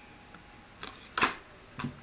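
Playing-card-sized oracle cards being handled and set down on a spread of cards: three short clicks and taps, the loudest a little past the middle, over faint room tone.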